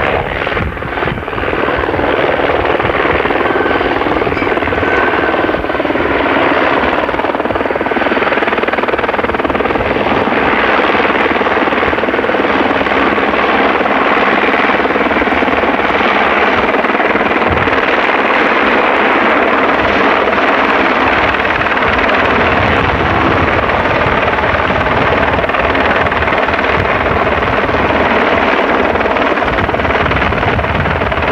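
Helicopter flying in and coming overhead, its rotor and engine noise loud and steady.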